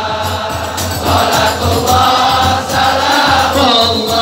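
A crowd of men singing Islamic sholawat (devotional praise of the Prophet) together in long, wavering held notes, over a steady low beat.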